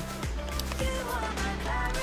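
Background music with steady held tones over a low bass.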